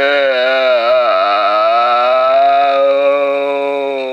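A person's long, drawn-out crying wail: one held vocal note whose pitch dips and wavers about a second in, then holds steady.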